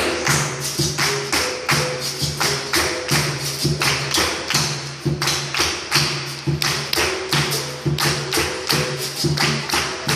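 Capoeira roda music: berimbau, atabaque drum and pandeiro playing, with steady hand-clapping at about three claps a second.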